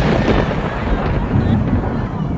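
Loud, steady rushing noise with a deep rumble from fast-flowing floodwater, heavy on the phone's microphone; it eases slightly near the end.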